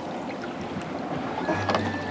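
A netted hoop turtle trap being lifted and handled at the side of a small boat: water and net noise, with a few knocks against the boat about one and a half seconds in.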